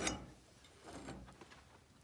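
Faint light clicks and handling noise from the shed door's latch handle being handled.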